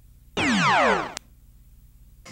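Synthesized sci-fi sound effect from a film soundtrack: a descending electronic sweep of several parallel tones lasting about half a second, starting about a third of a second in, followed by a short click. It accompanies a wireframe 'virtual world' effect on screen.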